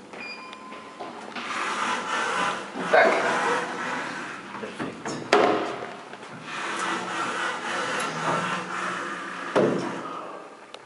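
ThyssenKrupp elevator car: a short beep as a floor button is pressed, then the car doors sliding shut, with sharp knocks about 3 and 5 seconds in and a thump just before the end as the doors close.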